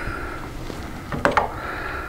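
Hands handling a motorcycle's handlebar brake perch and master cylinder assembly after its clamp cover has come off: low, uneven plastic-and-metal handling noise with a brief sharper sound a little over a second in, over a faint steady high hum.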